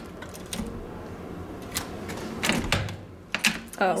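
Key card pushed into and pulled from an electronic hotel door lock and the brass lever handle tried: a series of small plastic and metal clicks, with a louder rattle about two and a half seconds in. This first try does not unlock the door.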